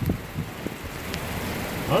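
Steady hiss of heavy rain with wind buffeting the microphone in a low rumble.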